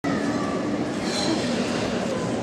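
Steady murmur of many voices from a crowd in a large, reverberant arena.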